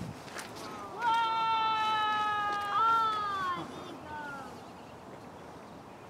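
A high, drawn-out cry, starting about a second in: one long note that sags slightly in pitch, then a shorter note that rises and falls.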